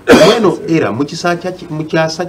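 A man clears his throat with one loud, short cough at the very start, followed by voices talking.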